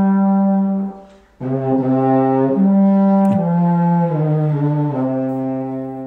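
A serpent, the snake-shaped bass lip-blown horn, being played: a held low note that breaks off about a second in, then after a short pause a phrase of held low notes that rises once and then steps down.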